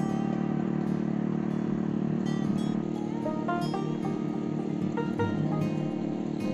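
Background music of plucked-string notes over the steady running of a small engine-powered garden tiller.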